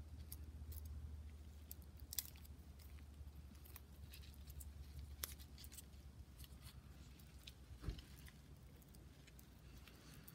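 Faint crackling and rustling of potting soil and stiff haworthia leaves handled by fingers, with scattered small clicks, a sharper tick about two seconds in and a soft thump about eight seconds in, over a low steady hum.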